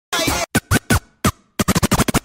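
Opening of a soca DJ mix: turntable scratching over a chopped-up sample, a short voice-like snippet and then choppy stabs that come faster and faster toward the end.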